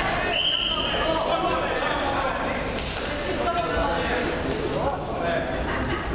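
Indistinct voices and shouts from spectators and corners, echoing in a large sports hall, over a steady background din as a boxing bout gets under way.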